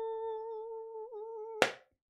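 A single held humming note, steady in pitch with a brief wobble about a second in, cut off abruptly with a click.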